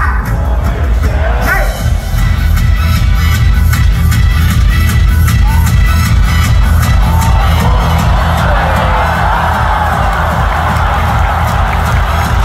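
Loud dance music with a heavy bass beat over the stadium's sound system, mixed with a crowd cheering. The crowd noise swells in the second half.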